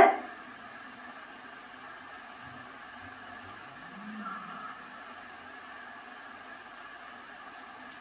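Quiet room with a steady low hiss, and a faint, brief voice-like sound with a rising-then-falling pitch about four seconds in, which the investigators subtitle as '¿Aún más?' and present as a spirit voice.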